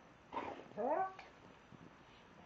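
A dog's vocal 'talking': a short breathy huff, then a rising whine-like call of about half a second that ends about a second in.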